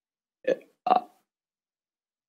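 Two short hesitation sounds from a man's voice, about half a second apart, like a brief 'uh' between words.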